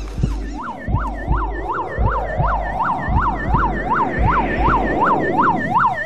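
Ambulance siren in a fast up-and-down yelp, about three cycles a second, starting about half a second in over a low rumble.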